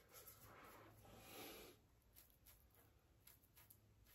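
Near silence: room tone, with one faint brief scrape about a second in.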